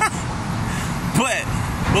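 Steady low rumble of city street traffic, with a man's short laugh about a second in and his voice again near the end.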